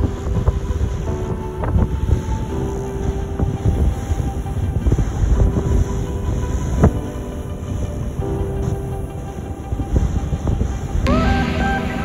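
A large 4x4 expedition truck's engine rumbles steadily as the truck rolls slowly down a beach access ramp, with a few clunks. Music comes in about a second before the end.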